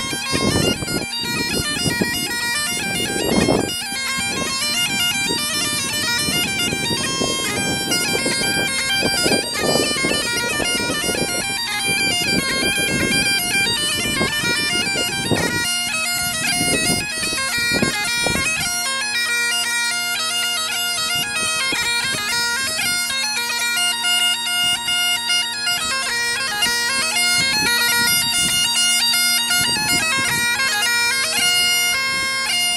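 Highland bagpipes playing a tune: the chanter's melody moves over the steady, unchanging hum of the drones. A low rumbling noise sits underneath for the first half and drops away a little past halfway.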